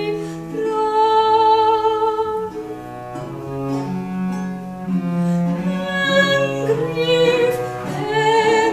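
Soprano singing an English Renaissance lute song to an accompaniment of bowed strings, baroque violin and viola da gamba, in sustained notes.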